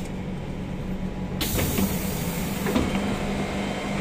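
Siemens C651 train standing at the platform with a steady hum, its doors sliding open about a second and a half in with a hiss lasting over a second, and a knock as the hiss starts and again as it stops.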